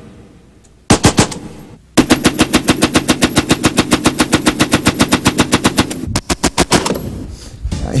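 Vickers Model 1912 water-cooled medium machine gun firing .303 British: a short burst about a second in, then a long burst of evenly spaced rapid shots lasting about four seconds, then another short burst.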